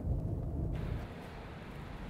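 Low rumble of a car in motion heard from inside the cabin, cutting suddenly less than a second in to the steady hiss and rumble of a covered parking garage.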